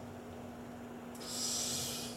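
A man's breath drawn in close to a microphone about a second in, a soft hiss lasting under a second before he speaks again, over a faint steady hum.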